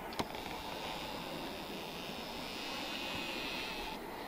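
Steady hiss of wind, with a single brief click just after the start and a thin higher hiss that stops near the end.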